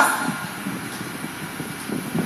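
Steady low rumble of background noise with a constant high hiss.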